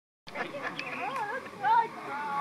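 A person's voice with a wavering, sing-song pitch, rising to a louder note near the end.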